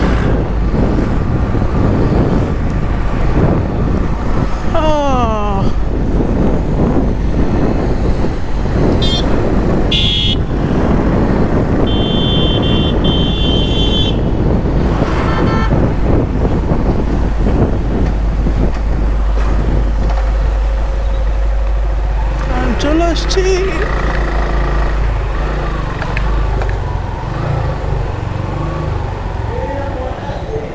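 Suzuki Gixxer SF single-cylinder motorcycle riding at low speed through traffic, with steady wind and road rush on the rider's camera microphone. A horn beeps twice around the middle. Near the end the rush falls away as the bike slows and stops.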